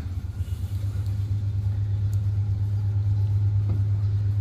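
A steady low rumble of a motor vehicle nearby, growing slightly louder over the few seconds.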